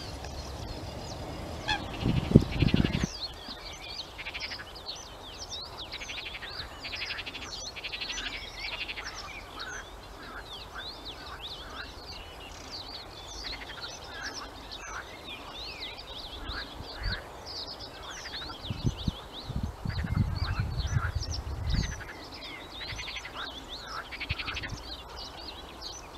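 Small songbirds singing in a reed bed, a dense chorus of quick high chirps, whistles and rapid chattering note runs. It is broken by low buffeting rumbles on the microphone about two seconds in and again for a few seconds near three quarters of the way through.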